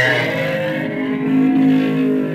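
Guitar music: plucked strings ringing in sustained, overlapping notes, the instrumental accompaniment to a chant.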